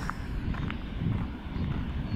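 Wind buffeting the microphone as a low, uneven rumble while a person walks along a gravel path, with faint footsteps.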